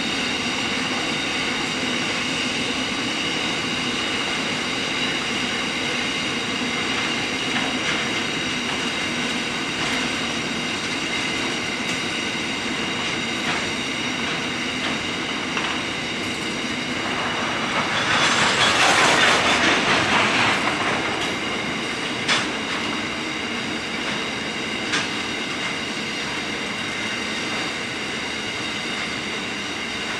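Coal train hopper wagons rolling steadily past, with a continuous high ringing from the wheels on the rails. About two-thirds of the way through the sound swells into a louder rush for a few seconds, followed by a couple of sharp knocks.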